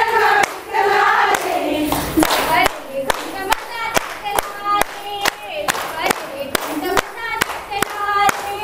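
A group of women singing a fugdi folk song together to rhythmic hand-clapping. From a few seconds in, the claps settle into a quick, steady beat of about three a second.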